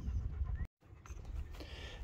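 Low rumble and handling noise on a handheld phone microphone, broken by a brief dead-silent gap about two-thirds of a second in where the recording is cut.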